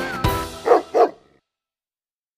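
Music with a steady beat ends about half a second in, followed by two quick dog barks about a third of a second apart. The barks are the loudest sounds.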